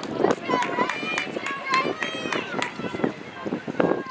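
Several spectators shouting and cheering on runners, their voices overlapping with no clear words.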